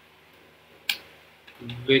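A single sharp computer keyboard keystroke a little under a second in, over faint room tone; a man starts speaking near the end.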